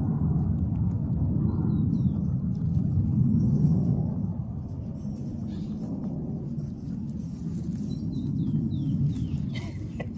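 A low, uneven rumble, louder in the first four seconds, with a few faint short high chirps that fall in pitch about two seconds in and again near the end.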